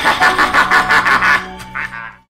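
Horror-film sound effect: a loud, harsh, rapidly pulsing sound over a low steady hum, weakening and dying away near the end.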